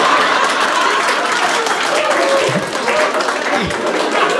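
Live audience applauding after a punchline, with a few voices mixed in; the clapping eases slightly toward the end.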